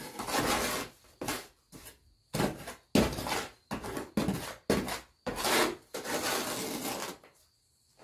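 Steel trowel scraping wet mortar and stone while stones are laid in a mortar-bedded wall, in a string of rough scrapes each under a second, with a longer one near the end.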